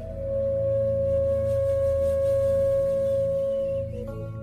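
Bansuri (Indian bamboo flute) holding one long steady note over a low drone; the note breaks off near the end.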